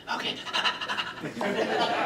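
A man laughing in breathy, panting bursts, mixed with a few spoken words.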